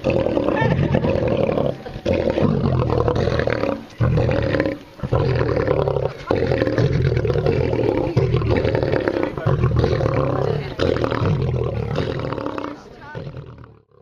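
Male lions roaring: a long series of loud, deep calls with short breaks, fading away near the end.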